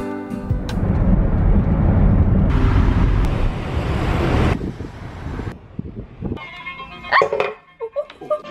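Busy street traffic ambience, a dense low rumble of many motorbike engines, after guitar music cuts off at the very start. It fades near the end, where brief voices are heard.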